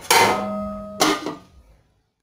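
Metal pot lid set onto a wok to cover the stew: two clangs about a second apart, each ringing on briefly before it dies away.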